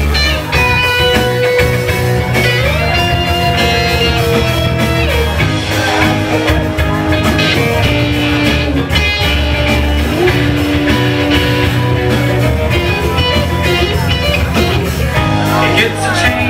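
Live punk rock band playing loudly: electric guitar with long held, sliding notes over bass and drums.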